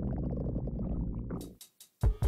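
A low stomach growl that dies away about a second and a half in.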